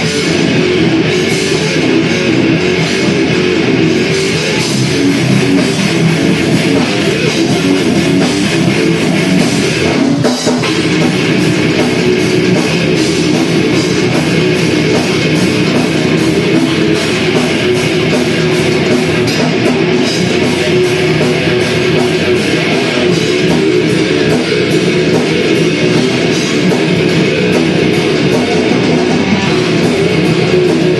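Heavy metal band playing live: electric guitars, including a Jackson guitar, bass guitar and drum kit, with a brief drop about ten seconds in.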